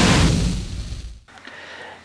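A sudden boom-and-whoosh transition sound effect that fades away over about a second, then a short stretch of quiet room tone.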